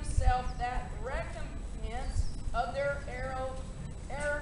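Raised, high-pitched voices shouting, not made out as words, with a low rumble underneath.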